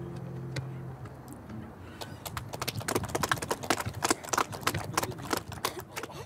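The last acoustic guitar chord rings out and fades away over the first second. From about two seconds in, a small group of people claps their hands, uneven and loud.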